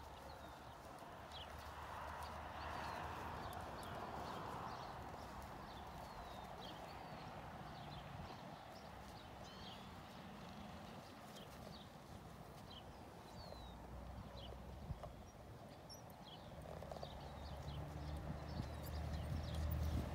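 Pony of the Americas mare's hooves walking in soft arena sand, with small birds chirping throughout. A low rumble builds near the end.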